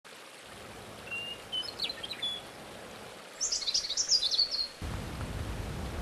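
Birds singing: a few thin high whistles, then a quick run of high chirps stepping down in pitch, over a faint hiss. A low rumble comes in near the end.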